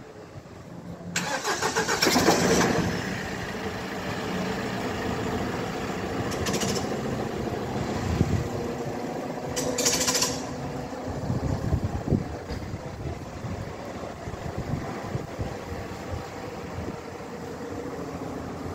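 A motor vehicle engine starts about a second in with a loud, pulsing burst, then keeps running steadily. Two brief hisses come through midway.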